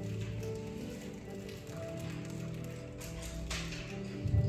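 Soft background music of sustained held chords, playing quietly under a pause in the preaching.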